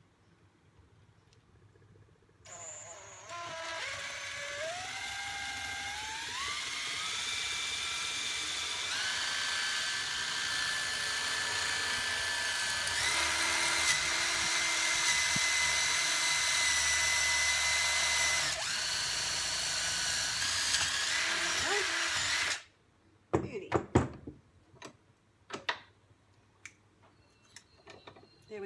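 Cordless drill boring through a small piece of dry timber held in a vice: the motor whine climbs in pitch in several steps as it speeds up, runs for about twenty seconds, then cuts off suddenly, followed by a few knocks.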